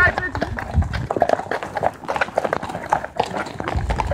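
Horses' hooves clip-clopping at a walk on a hard path, with people talking.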